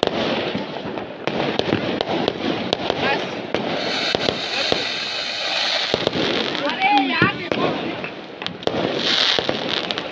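Firecrackers going off around a town at night: a run of sharp cracks and pops, with a stretch of high hissing crackle a few seconds in.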